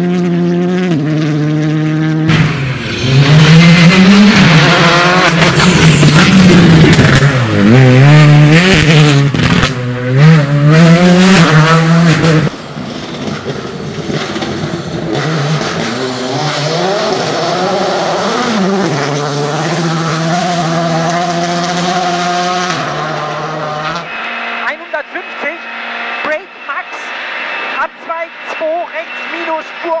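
Rally car engine revving hard, its pitch rising and falling over and over through gear changes as it slides on a loose gravel and dirt stage, with tyres and stones hissing under it. This is loudest in the first half and quieter afterwards. Near the end the sound changes to a quieter run with scattered knocks.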